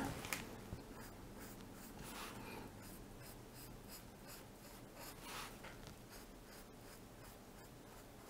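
Faint scratching of a felt-tip pen drawing a long curve on paper, with slightly louder strokes about two and five seconds in.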